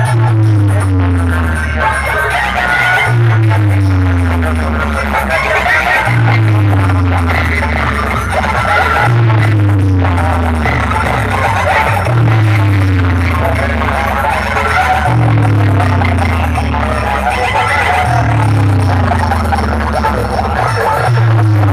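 Loud electronic dance music blasting from a competition DJ sound-box speaker rig, a deep falling bass note booming about every three seconds.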